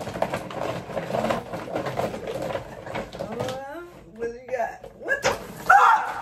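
Women's voices talking and laughing over each other, too indistinct to make out, with crackly rustling from a paper gift bag in the first half. A loud burst of laughter comes near the end.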